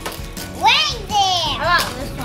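High-pitched voices of young children calling out in sliding, sing-song tones without clear words.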